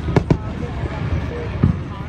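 Aerial fireworks bursting: three sharp bangs, two close together near the start and a third about two-thirds of the way through, over a steady low rumble.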